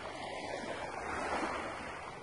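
Small waves washing against a sandy shoreline: a steady, even wash of water noise.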